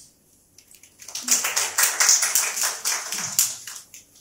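Audience applauding in a small room: a short round of clapping that starts about a second in, lasts about three seconds and fades out just before the end.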